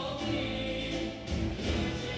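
Music with a choir singing.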